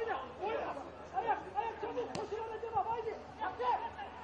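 Several men's voices shouting and calling out to each other across a football pitch, overlapping. A single sharp knock comes about two seconds in.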